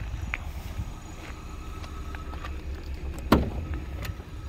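A car door latch clicking open once, about three seconds in, as a Vauxhall Astra's driver's door is opened, over a steady low rumble.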